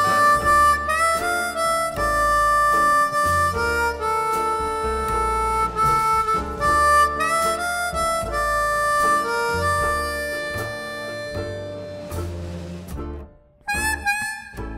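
Blues harmonica played cupped in the hands against a hand-held vocal microphone, long held notes with bends sliding between them. The playing breaks off briefly near the end and then resumes.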